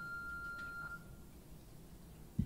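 A single steady electronic telephone tone heard in the handset, lasting a little over a second, from the film's soundtrack played over the hall's speakers. It is the ringing tone of a call that nobody picks up.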